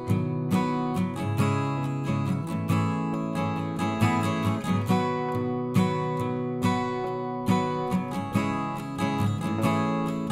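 Background instrumental music: a steady stream of plucked notes over sustained chords.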